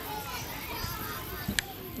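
Faint voices of children playing in the background, with one short sharp click about one and a half seconds in.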